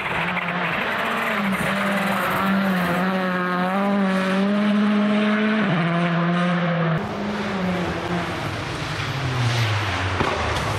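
Rally car engine running hard at high revs on a gravel stage, with tyre and gravel noise underneath. The engine note steps down a couple of times around the middle, then falls away near the end as the car goes off.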